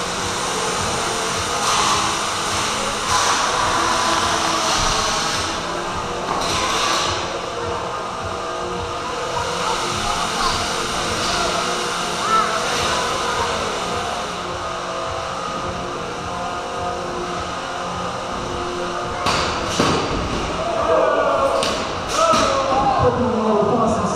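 Small 3 lb combat robots fighting in an enclosed arena box: several sharp thuds and knocks as they hit each other and the box walls, with a cluster of hits near the end. Under them runs echoing background chatter from a large hall.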